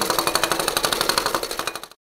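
Battery-operated toy jackhammer running its hammering action: a rapid, even rattle of strokes that fades and cuts off near the end.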